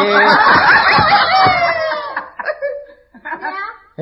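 Several people laughing together, loudest for about the first two seconds, then trailing off into a few scattered chuckles.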